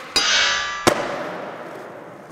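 Logo-ident sound effect: a bright, metallic clang-like hit just after the start, a second sharp click just under a second in, then a ringing tail that fades away.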